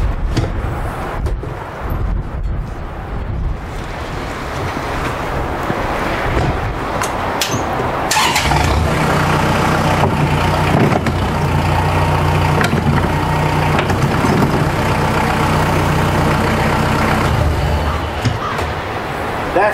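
Tractor diesel engine running, then brought up to a higher steady speed about eight seconds in and held there while the third-function hydraulics swing the snow plow blade from one angle to the other. A few knocks come in the first seconds.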